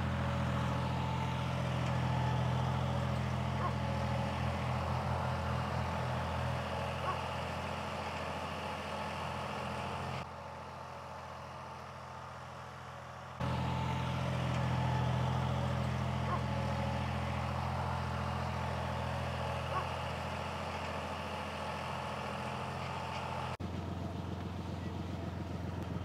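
Tractor engine running steadily under load as it pulls a ripper through hard, compacted soil. It drops away to a lower level for a few seconds about ten seconds in, then comes back.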